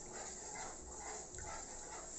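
Beaten eggs frying in hot oil in a wok, a faint, even sizzle as a wooden spatula stirs them.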